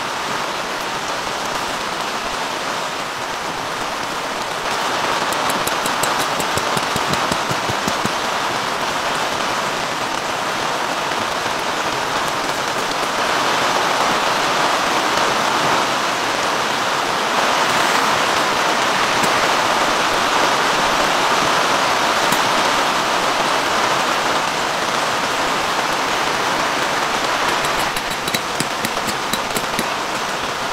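Steady rain falling on a tarp awning overhead. It grows heavier through the middle, with a few light ticks near the end.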